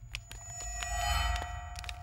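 Film soundtrack sting: a sustained bell-like ringing tone over a low rumble that swells and fades in the middle, with scattered light clicks.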